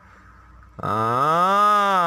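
A man's voice: one long drawn-out hesitation sound, "aaah", starting about a second in, its pitch rising and then falling.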